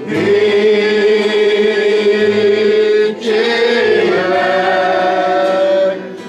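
A group of voices singing a slow song in long held notes, loud, in two phrases with a brief break about three seconds in.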